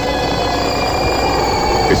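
Eerie background music of a radio horror program: a held, slightly wavering drone of several steady tones, heard through an old AM broadcast recording.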